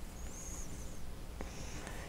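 Faint rustle of a yarn strand being pulled through a crocheted velvet bear by hand, with a couple of tiny ticks in the second half.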